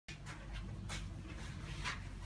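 Wide flat paintbrushes scrubbing brown paint onto stretched canvas: a few short, rough swishes, the loudest near the end, over a low steady hum.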